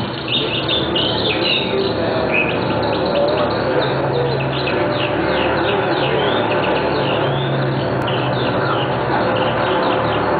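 Birdsong with many quick, repeated chirps, over a steady low background with a couple of held low notes.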